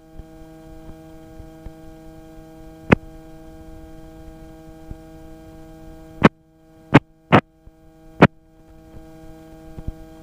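Steady electrical-sounding hum with evenly spaced overtones, heard through the helicopter's headset intercom audio rather than as open cockpit noise. Sharp clicks break it about three seconds in and again four times between about six and eight seconds, with a brief drop in the hum just after the six-second click.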